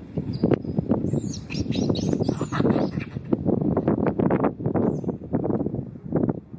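Birds chirping in the trees, in short high calls early on and again near the end, over a louder continuous rough noise in the lower range.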